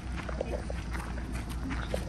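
Footsteps on a gravel path, about two steps a second, over a steady low rumble of wind on the microphone.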